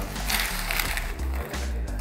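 Background music with a steady bass line.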